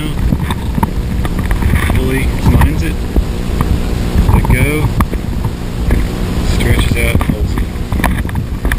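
Rope hauled through a 5:1 block-and-tackle of two double-sheave pulleys, with a loud, uneven rumble of rope and handling noise close to the microphone.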